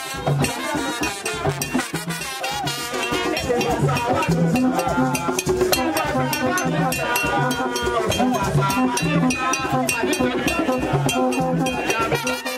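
Haitian chanpwel band music: dense, steady percussion with shakers and a repeating pattern of low notes, under group singing.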